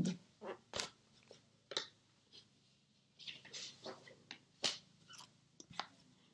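Faint handling noises as a clipboard of paper is set aside: a few scattered sharp clicks and knocks, with some rustling in the middle.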